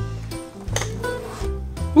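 Background music: held notes over a low bass, changing every half second or so.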